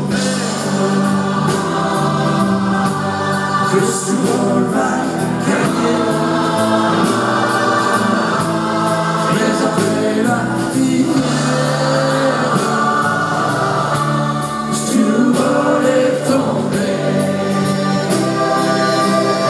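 Live concert music: a large choir sings held, sustained notes over a band with guitar and a steady beat.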